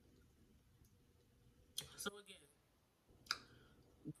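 Two sharp, crisp crunches while chewing a green bell pepper filled with cream cheese and Takis, one a little under two seconds in and one past three seconds, over near silence. A short vocal sound follows the first crunch.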